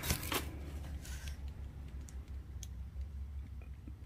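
Faint handling noise of cardboard firework tubes being moved in a box: light rustles and a few soft clicks, over a low steady hum.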